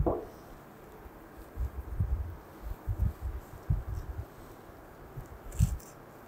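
Soft, low handling thuds and knocks of gloved hands working over a ceramic plate, setting food down, with a sharper knock and click near the end.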